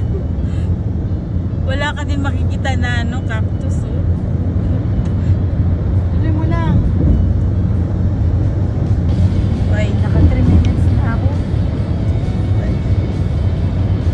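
Steady low rumble of a car's road and engine noise heard from inside the moving car, with snatches of voices and music over it about two, six and ten seconds in.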